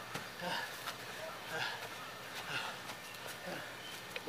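Faint voices of people talking in the background, with no loud sound standing out.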